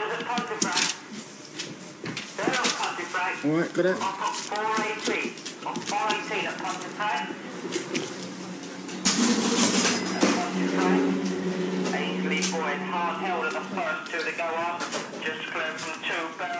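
Voices talking throughout, mostly untranscribed chatter. About nine seconds in, a sharp noise is followed by a steady hum that lasts about three seconds under the talk.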